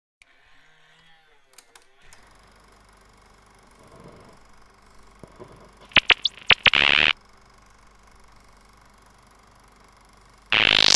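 Electronic glitch sound effects: a short cluster of sharp bursts and swooping pitch sweeps about six seconds in, lasting about a second, over a faint steady low hum.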